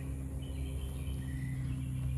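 Outdoor background sound: a steady low hum, with faint, thin high-pitched chirps that come and go.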